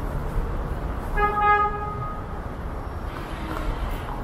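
A vehicle horn honks once, about a second in, with a single steady tone lasting just under a second, over the steady rumble of street traffic.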